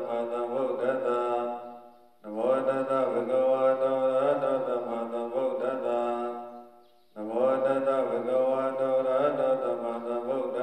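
A Buddhist monk chanting into a hand microphone, in long held phrases on a steady pitch that pause twice for breath, about two and seven seconds in.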